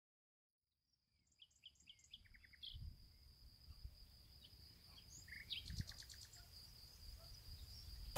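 Very faint birdsong: short high chirps and a quick trill in two bursts, over a steady high-pitched tone, with a few soft low thumps.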